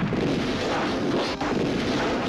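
Film sound effect of an explosion and car crash: a sudden loud blast of dense noise that carries on, with a short break about one and a half seconds in.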